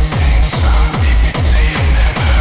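Aggrotech electronic dance track: a heavy kick drum with a falling pitch pounds out a fast, steady beat, with two hissing snare-like hits about a second apart.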